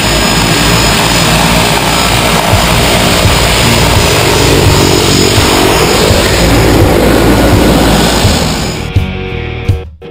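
Loud propeller aircraft noise, a steady rushing sound, mixed with rock music; the aircraft noise dies away near the end.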